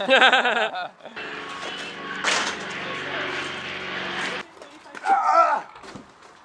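A vehicle engine runs steadily for about three seconds with a low, even drone, then cuts off suddenly. A sharp knock comes partway through. Brief laughter comes at the start and near the end.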